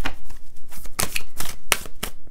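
A deck of Moonology oracle cards being shuffled by hand: a quick run of sharp card flicks and slaps.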